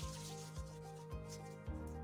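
Hands rubbing together, working in hand sanitizer, in quick repeated strokes, over background music with a steady beat.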